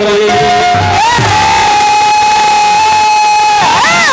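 A male Bhojpuri folk singer holds one long sustained sung note through a PA microphone, sliding into it and then swooping up in pitch near the end.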